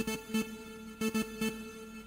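Synth loop from FL Studio's Morphine synthesizer on its LED Ice Cube preset: short, sharp notes in small syncopated groups about a second apart over a steady held tone.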